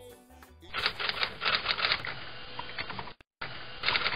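The song's last notes fade out. About a second in, a dense, rapid clatter of clicks starts, breaks off for a moment just past three seconds, and then resumes.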